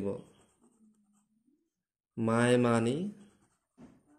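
A ballpoint pen writing on paper, faint. A voice speaks a word for about a second in the middle, and that word is the loudest sound.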